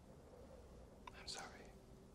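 Near silence, with one brief faint whisper about a second in.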